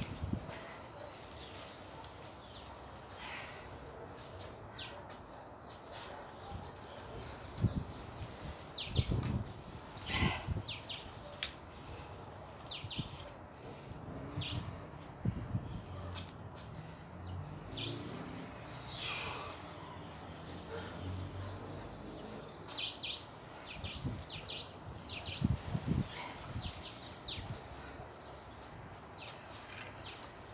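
Small birds chirping in short, scattered calls, in clusters about a third of the way in and again near the end, over occasional low thuds and rumble.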